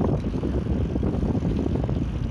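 Steady low rumble of wind buffeting the microphone and bicycle tyres rolling over paving stones during a ride.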